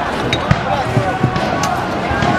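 Crowd of many voices shouting at once in the street, with several dull thuds, the loudest about half a second in.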